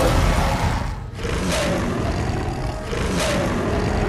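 Dramatic sound-effect roar and rumble of a CGI gorilla: a deep, steady rumble with a short dip about a second in, then two whooshing swells.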